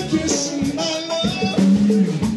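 Live band music: electric bass, electric guitar and a drum kit playing a groove between sung lines.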